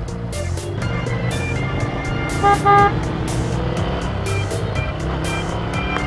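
Motorcycle engines running low under background music with a steady beat. About two and a half seconds in come two short, loud pitched beeps.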